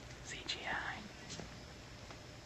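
A person whispering, in a few breathy bursts about half a second in, over a low steady room rumble.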